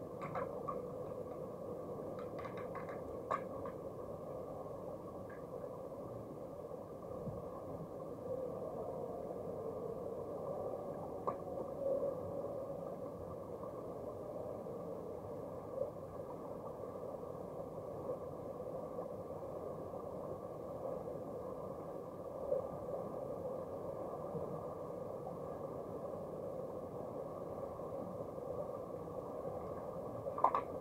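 Underwater swimming-pool ambience: a steady, muffled hum in the water with a few faint sharp clicks and taps, most of them in the first few seconds.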